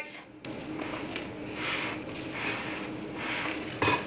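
Rubber spatula scooping whipped egg whites from a glass bowl and folding them into thick cake batter: a run of soft scrapes and squelches, with one sharp knock just before the end.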